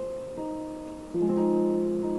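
Chords played on a Yamaha portable digital keyboard: one chord is held, then a new, louder chord is struck about a second in and sustained.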